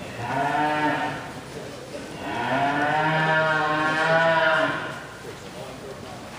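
A heifer mooing twice: a short call at the start, then a longer, louder one from about two seconds in.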